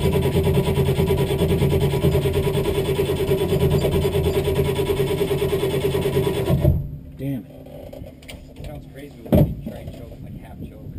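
1960 Willys Station Wagon's engine idling steadily, heard from inside the cab, then cutting out suddenly about seven seconds in. A single sharp knock follows near the end.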